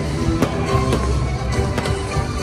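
Live rock band playing music on stage with drums. The music is broken by a few sharp cracks: about half a second in, about a second in, and a pair near the end.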